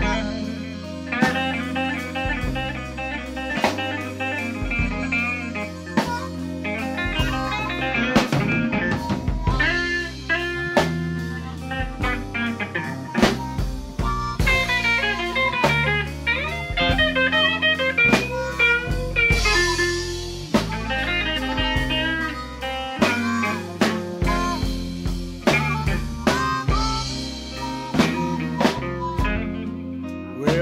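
Electric blues band playing an instrumental passage: electric guitar lead lines that bend in pitch over bass and a drum kit, with no singing.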